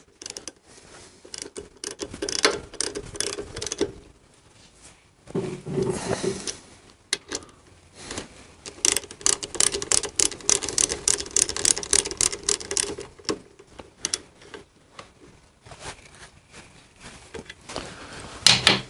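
Hand ratchet wrench clicking in runs of rapid clicks as the bolts of a motorcycle's rear brake caliper are tightened, the fastest run about halfway through, with light clinks of the tools being handled.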